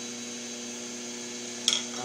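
Wood lathe running with a steady electric hum. A single sharp click comes near the end.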